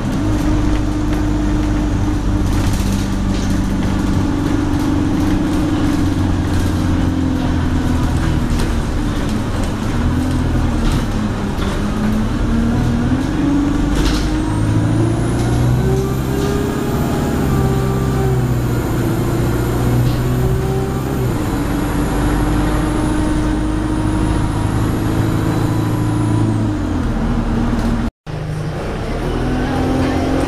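Alexander Dennis Enviro200 single-deck bus heard from inside the saloon while on the move: the diesel engine runs under road noise and interior rattles. Its pitch climbs and holds through the middle, then falls away, while a faint high whine rises and falls over it. The sound breaks off for a moment near the end.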